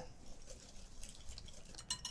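Wire whisk stirring batter in a glass mixing bowl: faint swishing with light ticks of the wires against the glass, and a couple of sharper clicks near the end.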